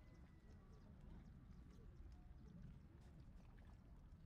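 Near silence: a faint low rumble with scattered faint clicks.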